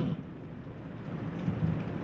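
Steady rushing background noise, a pause between a man's spoken phrases; his voice breaks off right at the start.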